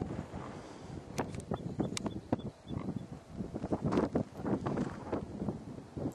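Wind gusting against the camera microphone, uneven and buffeting, with scattered irregular clicks and rustles from the camera being handled as it pans.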